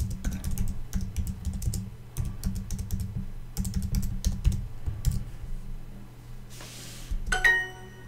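Fingers typing on a computer keyboard, a quick run of key clicks for about five seconds. Near the end comes a short multi-note chime: Duolingo's correct-answer sound.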